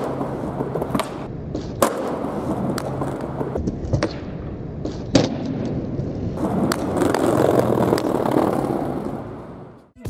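Skateboard rolling, its wheels running steadily, with several sharp clacks of the board striking the ground, a few seconds apart. The rolling grows louder about two-thirds of the way through, then fades out near the end.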